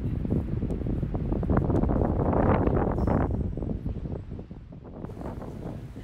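Wind buffeting the microphone, a gusty rumble that swells around the middle and eases off toward the end.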